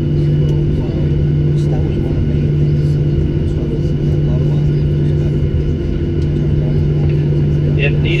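Steady cabin drone of a Boeing 737-800 parked at the gate: a constant low hum with a faint, steady high-pitched whine over it.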